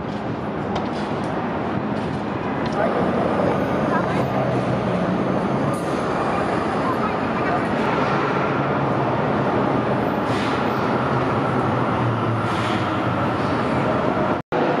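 Busy downtown street ambience: steady traffic noise with the voices of passers-by mixed in.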